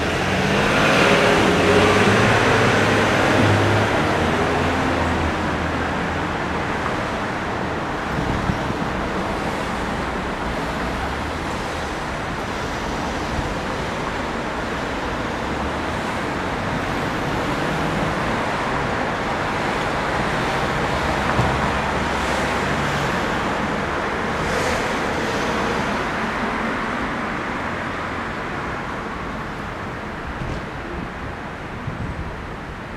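City street traffic: a steady background of cars, with one vehicle passing close and loudest about two seconds in.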